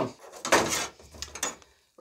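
A short scraping, rustling handling noise about half a second in, fading into fainter movement noise and cutting to silence just before the end.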